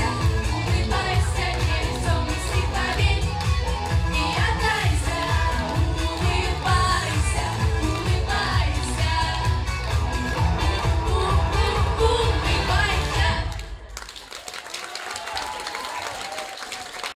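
Three girls singing a pop song into microphones over amplified pop music with a steady beat. Near the end the music stops and the audience applauds.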